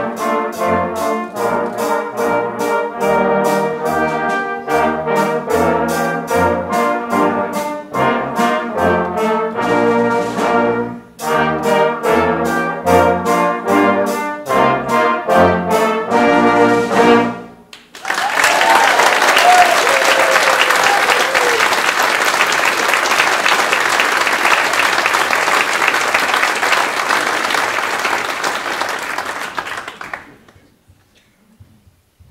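A brass band with drum kit playing a rhythmic piece with a steady beat, which ends about seventeen seconds in. Audience applause follows for the rest of the time, with a cheer near its start.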